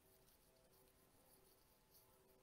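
Near silence: faint room tone with a few faint, steady, thin tones.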